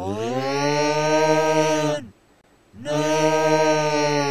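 The creature's long, deep yell, one drawn-out 'aaah' held at a steady pitch for about two seconds and dropping away at the end. After a short silence the same yell starts again.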